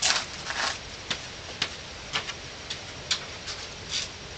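Footsteps crossing a porch floor: short sharp clicks roughly two a second, after a louder scuffing burst at the start.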